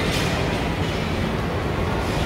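Steady background din of a busy indoor shopping mall: an even, low rumbling wash of crowd and building noise, with no music playing.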